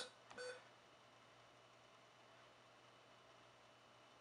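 A single short electronic key-press beep from the car stereo's touchscreen buzzer as a button is pressed, about half a second in, then near silence with faint hiss.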